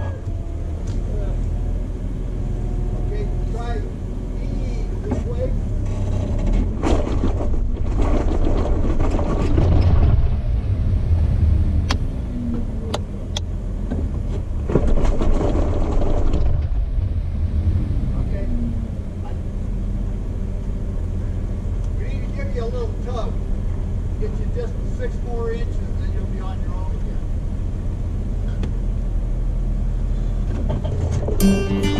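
Jeep engine running at a low crawl over rocks, a steady low drone that swells louder twice, around 7 to 10 seconds and again around 15 to 16 seconds, with a few sharp clicks between.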